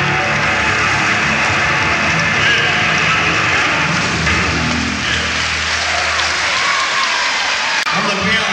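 A live rock band's closing chord ringing out over a concert crowd's applause. The low held note fades away near the end.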